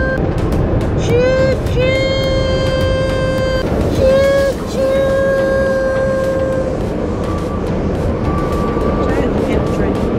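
A voice imitating a train whistle in long, high, held "toot" notes, several in a row with short breaks, over the steady road noise inside a moving car.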